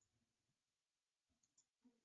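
Near silence, with a few very faint clicks of a computer mouse in the second half.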